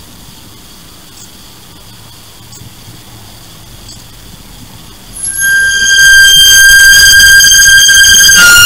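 Faint VHS tape hiss and hum for about five seconds. Then a loud, steady, high held note of logo music cuts in and carries on.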